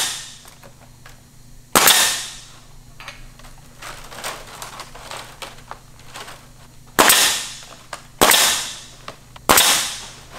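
Pneumatic coil nailer firing four times, driving nails through synthetic palm thatch shingles. Each shot is a sharp bang followed by a short fading hiss of exhaust air.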